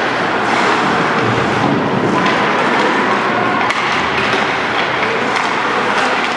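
Ice hockey game sounds in a rink: a steady wash of skates scraping the ice and arena noise, with a few short sharp clacks of sticks and puck.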